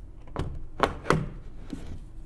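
A few light knocks and clicks from handling the holographic fan's plastic LED blade and motor hub as it is fitted on its wall mount.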